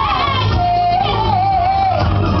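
A woman singing a held, wavering melodic line over a backing track with a heavy, steady bass. The voice rises about halfway in, then settles into a long held note.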